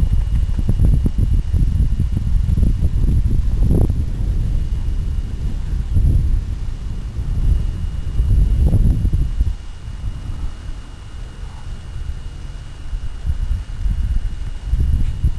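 Hooves of a Paso Fino stallion on the dirt of a round pen as he moves around at the end of a long rope, under a loud low rumble on the microphone that eases after about nine and a half seconds.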